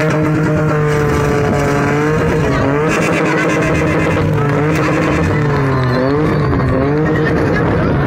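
Car engine revving hard as the car spins donuts, its pitch held high and wavering, dipping and climbing back sharply about six seconds in, with tyre skid noise underneath.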